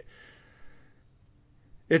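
A man's faint breath out, a short sigh that fades over about a second, followed by a hush.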